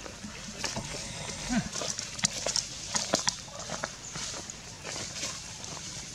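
Irregular rustling, crackling and snapping of leaves and twigs in forest undergrowth as monkeys move about, with a series of sharp clicks.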